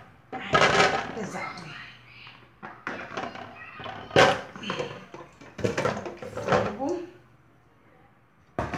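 Raw chicken pieces tipped from a plastic bowl into an aluminium pot, landing as a few short wet slides and thuds; the sharpest comes about four seconds in.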